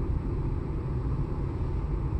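Steady low rumble in the cabin of a stationary Jeep Cherokee, its 2.2-litre Multijet diesel engine idling.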